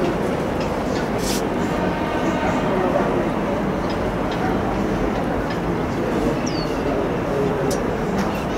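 Steady ambient noise with indistinct background voices, and two short high chirps, one about seven seconds in.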